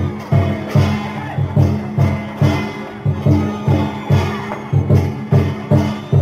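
Lion-dance percussion music: drum and cymbal strokes beating steadily, about two and a half strokes a second.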